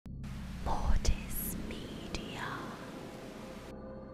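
Glitchy static-noise logo sting: a burst of hiss with deep low hits about a second in, sharp glitch clicks and warped swooshing sweeps, cutting off suddenly just before the end.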